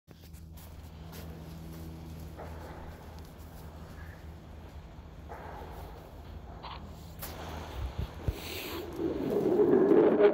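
A low, steady hum with a couple of sharp taps about eight seconds in, then the audio of a reversed film-company logo starting to play through a phone's speaker and growing louder near the end.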